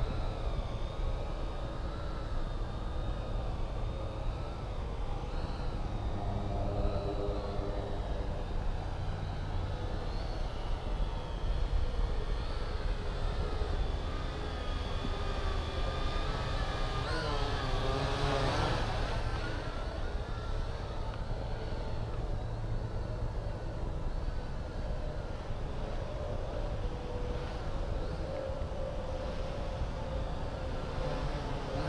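Syma X8HG quadcopter's brushed motors and propellers whining steadily in flight, heard from its onboard camera over a low rush of air. About two-thirds of the way through, the whine dips in pitch and climbs back.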